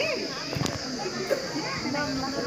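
Crowd of people talking over one another, children's voices among them, with one sharp click about two-thirds of a second in.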